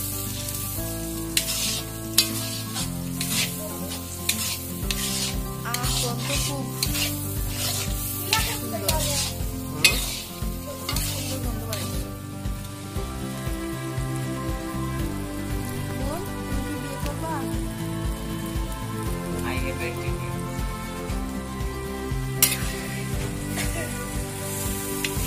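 Noodles frying and sizzling in a large iron kadai while a metal spatula stirs them, scraping and clinking against the pan. The clinks come thick and fast in the first half and thin out after about twelve seconds.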